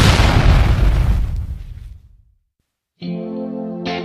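A loud, noisy crash from the intro music dies away over about two seconds into a brief silence. About three seconds in, a clean electric guitar with a chorus effect starts playing the song's intro.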